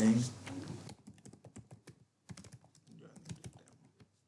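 Typing on a computer keyboard: a quick run of keystrokes starting about a second in, with a brief pause in the middle.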